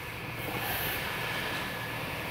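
2002 Nissan Frontier's V6 engine idling at about 775 rpm, heard from inside the cab as a steady hum and hiss.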